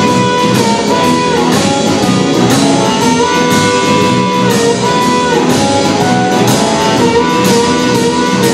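Live electric blues band: an amplified harmonica, cupped to a microphone, holds long notes and bends them down, over electric guitars, bass guitar and a drum kit keeping a steady beat.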